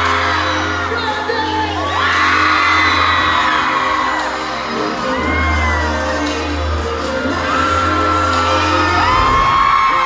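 Live pop music over a steady bass line, with a crowd of fans screaming in long high-pitched shrieks over it.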